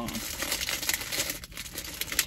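Thin plastic food packaging crinkling and crackling as it is handled, a run of small irregular crackles.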